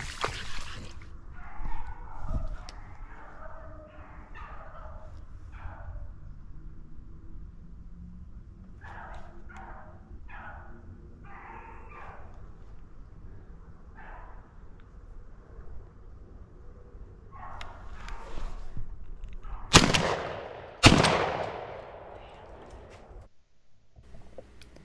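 Beagles baying on a running rabbit, in broken runs of howls, then two shotgun shots about a second apart near the end, each followed by a trailing echo.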